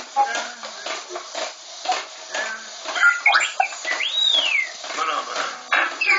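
R2-D2 replica's sound system playing droid beeps and chirps over a series of clicks, with a long whistle that rises and then falls away about four seconds in and another falling whistle at the end.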